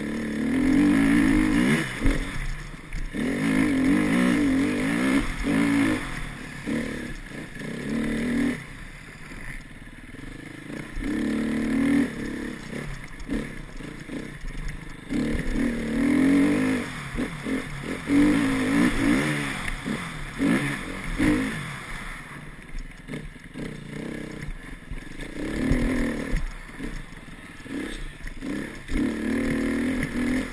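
Enduro motorcycle engine heard from the rider's helmet, revving up hard in repeated throttle bursts and dropping back between them, about eight surges in all.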